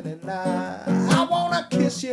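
Acoustic guitar strummed in a song, with a man singing.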